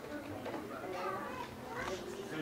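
Low background chatter of children's and adults' voices.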